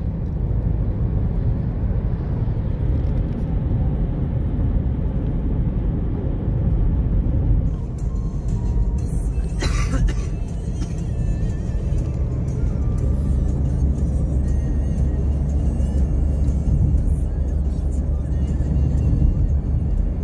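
Steady low rumble of a car's engine and tyres heard from inside the cabin at motorway speed, with music playing over it. A brief sharp click comes about halfway through.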